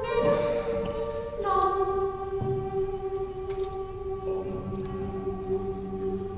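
Youth choir singing slow, long-held chords that move to new pitches about a second and a half in and again around four seconds, growing softer toward the end.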